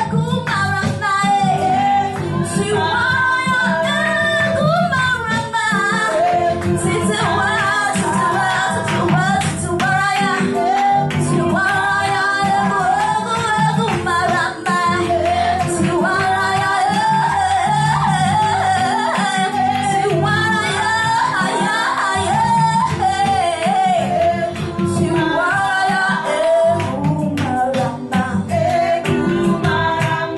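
A woman singing a church praise song into a microphone, with an electronic keyboard holding chords beneath her voice.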